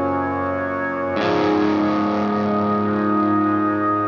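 Instrumental passage of a rock song: effected electric guitar chords ringing out, with a new chord struck about a second in.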